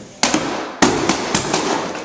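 About six sharp bangs in quick succession, each ringing briefly in a large hall.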